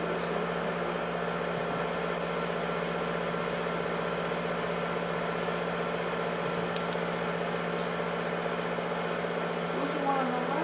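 Steady machine hum, as from a film projector running, with a few fixed low tones over a hiss and no change in level.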